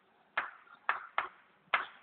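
Chalk writing on a chalkboard: four short, sharp taps and scrapes as strokes are drawn, each fading quickly.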